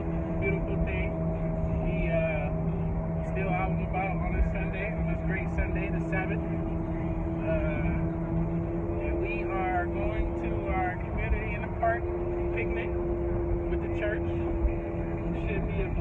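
Road and engine noise inside a moving car's cabin: a steady low rumble. Several held, steady tones and wavering voice-like sounds sit over it, and the lowest tone stops about halfway through.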